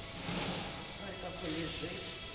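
Indistinct voices of people talking, with no clear words, over a steady background hum and faint music.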